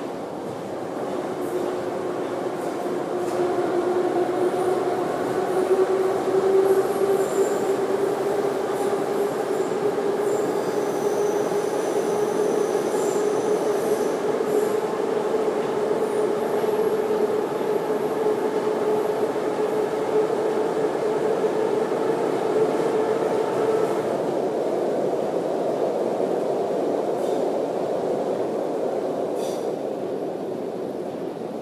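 Metro train running through a tunnel, heard from inside the carriage: a steady rumble with a drawn-out tone that climbs slowly in pitch. It grows louder over the first few seconds, then holds steady.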